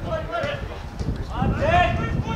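Voices calling out during an outdoor football match, loudest with one long rising-and-falling shout about one and a half seconds in, over a low rumbling noise.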